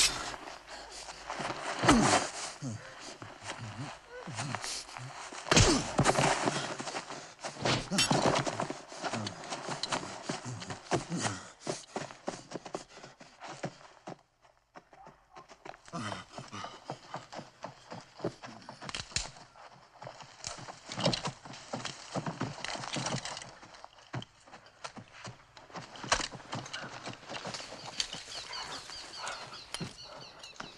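Film sound of a fight on the ground: irregular thuds and scuffling with wordless grunts and cries. The sound drops away briefly about halfway through.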